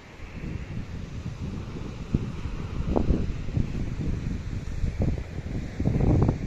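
Wind buffeting the microphone: an irregular, gusty rumble that grows louder about two seconds in.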